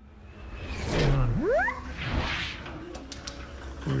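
Whooshing rushes of a handheld phone being moved about, with a short sound about a second in that glides sharply upward in pitch.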